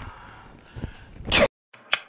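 A brief rising swoosh transition effect about 1.4 s in, after which the sound cuts to dead silence, broken by one short swish as the outro title card appears near the end.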